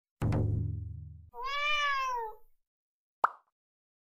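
Intro sound effects: a low puff that fades over about a second and cuts off, then a single cat meow that rises and falls in pitch, then one short pop.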